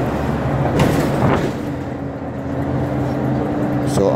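Bus engine and road noise heard from inside the moving bus: a steady low rumble, with two short noisy bursts about a second in and a steady hum settling in after that.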